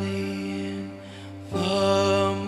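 Slow live worship music: held keyboard chords under a long sustained sung note. The sound dips just after a second in, and a new held chord comes in about a second and a half in.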